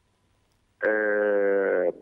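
A man's voice over a telephone line: after a short silence he holds one steady vowel, a drawn-out 'eeh' of hesitation, for about a second.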